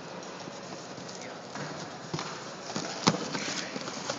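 Cardboard box crunching, rustling and tearing as a young tiger bites and paws at it, with scattered knocks. The sharpest knock comes about three seconds in.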